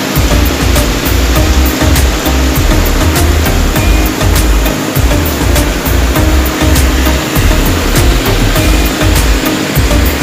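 Heavy rain pouring down while strong gusty wind buffets the microphone in uneven low rumbles, with scattered sharp ticks throughout.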